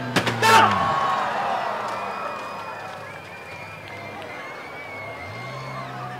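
A car crashing into a wine rack of bottles: a few sharp cracks of impact right at the start, then a crowd noise that slowly fades, with the car's engine note coming up again near the end.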